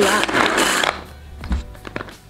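Pull-cord hand chopper with three stainless steel blades being worked: the cord zips back and the blades whirr inside the plastic bowl. This stops about a second in, followed by a knock and a click as the plastic bowl is handled.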